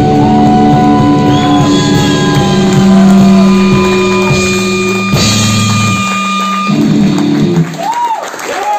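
Live band with distorted electric guitars and a drum kit playing the closing bars of a song: held chords under a bending lead guitar line, then the drums and bass drop out and a short last chord rings out near the end.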